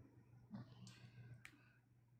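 Near silence with a low hum and a few faint clicks, the sharpest about one and a half seconds in.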